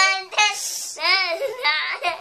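Young girl singing syllables like "da", her pitch gliding up and down, with a short hiss about half a second in.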